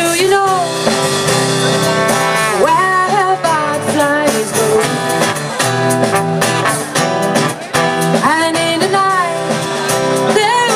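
Live band playing a song: a trombone carries a sliding melody over strummed acoustic guitar, bass guitar and drums, with cymbals striking throughout.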